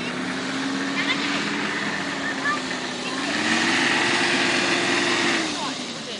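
Engine of a small 4x4 SUV driving through soft sand. It revs higher about three seconds in, holds there under load, then eases off near the end.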